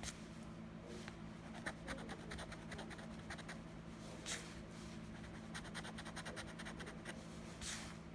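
A coin scratching the coating off a paper lottery scratch-off ticket in quick, short strokes, with two longer, louder rasps about four seconds in and near the end.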